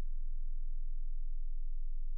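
A steady low hum, with no other sound.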